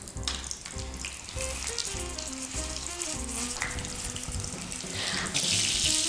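Filet mignon sizzling in hot olive oil and butter in a stainless steel frying pan as it is seared, the sizzle growing markedly louder about five seconds in.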